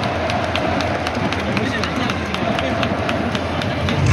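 Baseball stadium crowd: a dense din of many voices with rhythmic sharp clacks, about three to four a second, from fans cheering in time.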